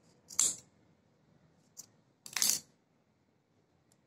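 Steel scissors snipping through a bundle of yarn twice, about two seconds apart, trimming the ends of a woollen flower, with a faint click between the cuts.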